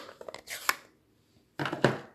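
Plastic ink pad case being handled: a quick run of light clicks and taps as it is snapped open, then a short scrape and tap near the end as it is set down on the table.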